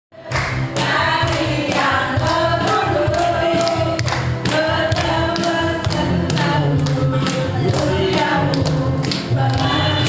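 A group singing together with a man's voice over a microphone and music, while people clap in time, about two claps a second.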